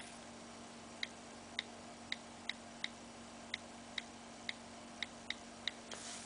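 iPhone on-screen keyboard clicks, about a dozen short faint ticks at an uneven typing pace, as a Wi-Fi network password is typed in.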